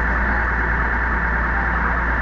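TTC subway car's telemetry data signal coming out of the passenger announcement speakers as a steady, unbroken electronic data noise, over a low steady hum. The noise is a fault: the car's data line is being fed onto the customer audio line.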